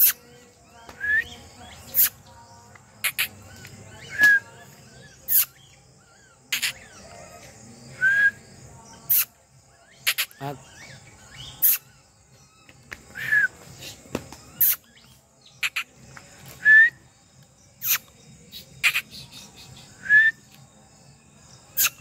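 A bird calling again and again outdoors, one short hooked chirp about every three seconds, with sharp high clicks between the calls and a faint steady high insect drone underneath.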